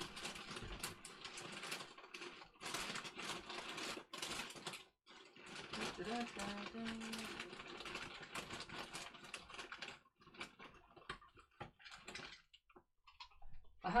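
Faint rummaging: a dense run of small clicks and rattles as things are picked up and moved while searching for a brush. It thins out to a few scattered clicks after about ten seconds.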